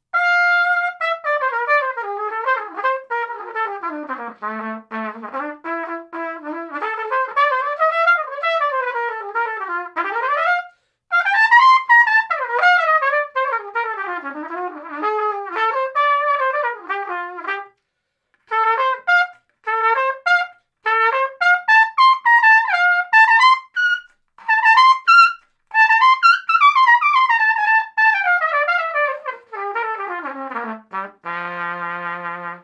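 Trumpet played through a plastic BRAND Groove mouthpiece: flowing melodic phrases with quick runs sweeping up and down, dipping to a low note about four seconds in. Brief breaths separate the phrases, and the second half turns to shorter, more detached notes.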